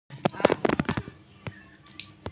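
Hands pulling apart and peeling lemon segments close to the microphone: a quick run of crackles as the rind, pith and membrane tear during the first second, then single sharp clicks about halfway through and near the end.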